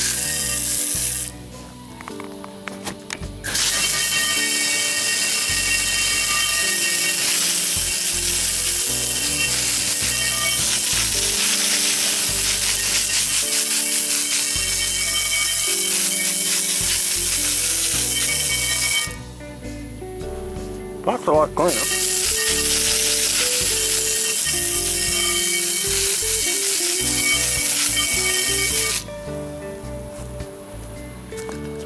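Garden hose spray nozzle blasting water onto a cast iron skillet, rinsing off oven cleaner and loosened crud: a loud, steady hiss that stops briefly about a second in and again near 19 seconds, then cuts off just before the end. Background music plays underneath.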